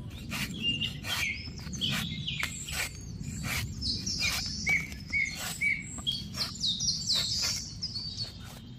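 Cleaver blade slicing into a young coconut's fibrous husk in a run of crisp cuts, about two a second, with birds chirping throughout.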